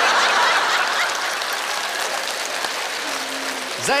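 Theatre audience laughing and applauding after a punchline, the applause loudest at the start and slowly dying away.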